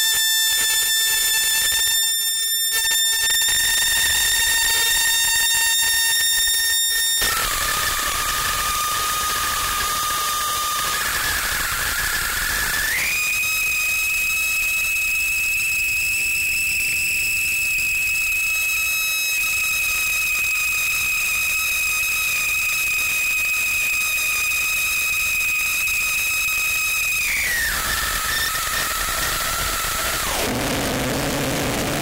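Live experimental electronic music: steady high synthesized tones over a bed of hiss. A tone rich in overtones gives way to a lower, plainer tone about seven seconds in. About thirteen seconds in the pitch steps up to a single high tone, which is held until it drops back down near the end.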